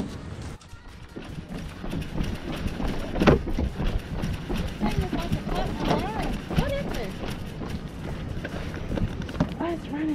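Footsteps and knocks on a wooden pier deck as the camera is carried, over a steady low rumble, with a few short voiced sounds midway.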